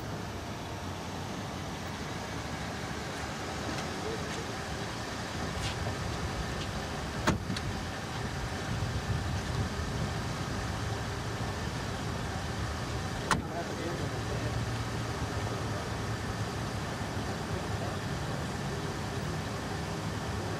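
A large sedan's engine running at idle as it pulls up and stops. Two sharp clicks of its door come about seven and thirteen seconds in.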